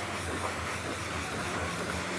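Pressure-washer jet from a long lance spraying onto the corrugated metal side of a cargo truck's box body: a steady hiss of water with a low steady hum underneath.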